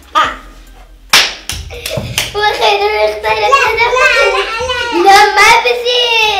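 A few sharp hand claps about a second in, followed by young girls' excited, continuous voices.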